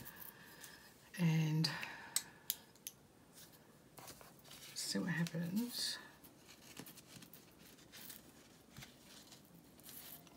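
A craft knife cutting a small slit in a paper cutout, with paper being handled: a cluster of light clicks and scratches about two to three seconds in.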